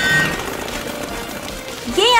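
Cartoon propeller plane's engine buzzing with a fast, rattling pulse as it flies off, fading steadily.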